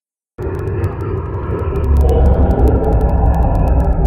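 A loud deep rumble that starts abruptly about half a second in and swells, with sharp crackling clicks scattered through it.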